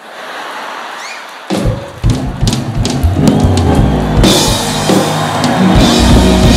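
Crowd noise for about a second and a half, then a live band kicks in loudly with drum kit and bass, with a steady beat of drum strikes.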